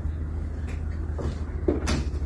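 A few short, dull knocks over a steady low hum, the loudest knock near the end.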